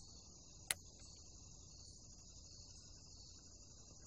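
Faint, steady high-pitched chirring of insects, with a single sharp click about three-quarters of a second in.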